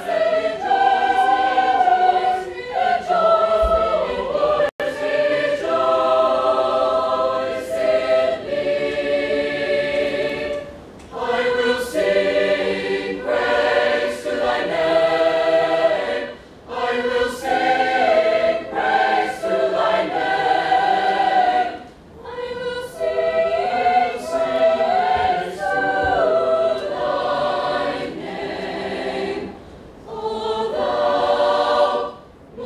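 Mixed choir of young women and men singing a sacred choral piece in sustained phrases, with short breaks between phrases about 11, 16 and 22 seconds in.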